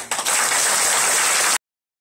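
Audience applause that breaks out suddenly and loudly, close to the microphone, right after a choir's song ends. It is cut off abruptly about one and a half seconds in.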